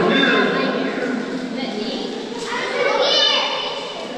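Indistinct, high-pitched voices of children calling out, echoing off the rock walls of a tunnel, with a louder high shout about three seconds in.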